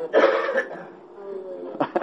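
A person coughs: a loud, rough burst of breath lasting under a second, followed by a faint voice.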